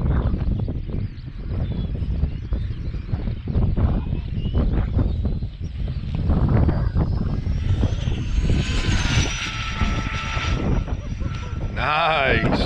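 Wind buffeting the microphone, with the high whine of an electric RC speed-run car climbing steadily in pitch as it accelerates down the runway, peaking about two-thirds of the way through and then holding and fading.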